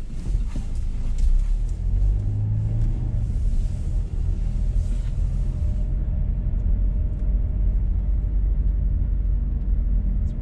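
Car engine and road rumble heard from inside the cabin while driving slowly, the low engine note rising briefly about two seconds in. The higher road hiss drops away about six seconds in as the car turns onto a side street.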